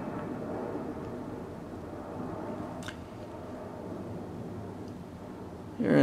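Steady low background hum and hiss of a small room, with a single faint click a little under three seconds in.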